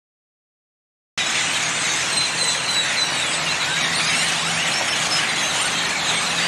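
Silence, then about a second in a sudden cut to loud, steady outdoor traffic noise with a low hum underneath and thin, high squeaky chirps running over it.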